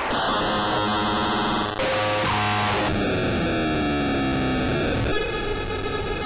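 Electronic music made of harsh, noisy synthesizer textures that switch abruptly every second or two, with a few falling synth tones in the middle.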